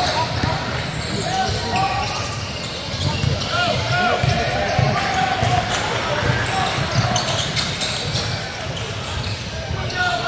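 Live gym sound of a basketball game: balls bouncing on a hardwood court in a steady run of thumps, with short sneaker squeaks and indistinct players' voices echoing in the hall.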